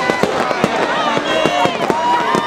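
Firecrackers going off in quick, irregular bangs over a crowd of many voices shouting and calling out at once.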